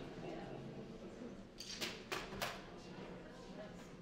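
Three or four short, scratchy strokes from the Disarm violin, a violin built from a decommissioned firearm, about two seconds in, over a faint murmur in the room.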